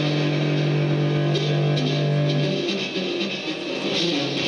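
Live rock band playing electric guitar, bass guitar and drums. A low note is held for about two and a half seconds, then the playing changes.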